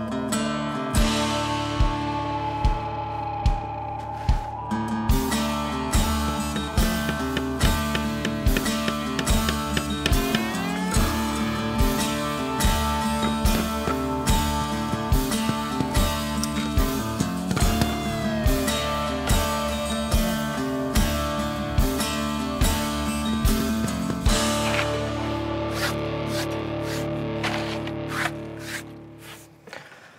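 Background music with guitar over a steady beat, fading out near the end.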